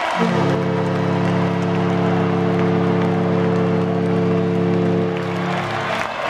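Hockey arena horn sounding one long, low, steady chord for about five and a half seconds, starting and stopping abruptly, over a cheering, applauding crowd.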